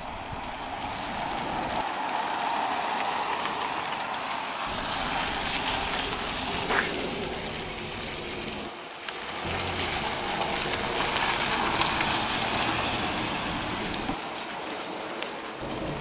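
Chevrolet minivan driving slowly past across a parking lot: a steady rushing hiss of tyres and engine, with a short break about nine seconds in.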